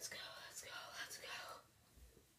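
A boy whispering faintly for about a second and a half.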